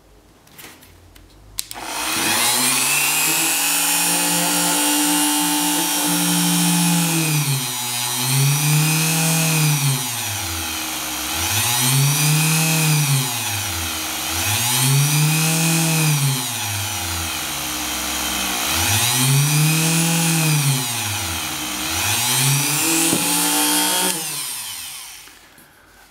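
Dremel 3000 rotary tool motor spinning an aluminum disc. Its whine starts about two seconds in and sags in pitch and recovers about five times as a neodymium magnet is brought near the disc: eddy-current braking slows the spin. It is switched off near the end and winds down.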